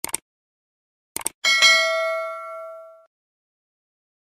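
Subscribe-button sound effect: two quick clicks, two more clicks a little over a second later, then a bright bell ding that rings for about a second and a half and fades away.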